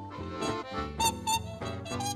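Acoustic swing band playing an instrumental passage with no singing: an accordion carrying the melody over chugging archtop guitar chords and plucked upright bass.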